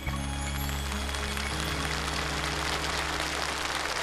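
The song's backing band ending on a long held chord while audience applause breaks out suddenly and continues over it.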